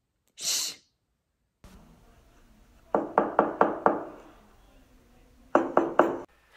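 Knocking on a door: five quick knocks about three seconds in, then three more near the end. A short breathy hiss comes just after the start.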